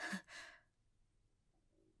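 A woman's soft, breathy sigh in two short puffs within the first half second.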